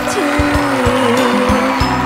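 A woman singing a Thai ballad into a handheld microphone over a live-band backing, holding long, wavering notes while drum beats land about twice a second.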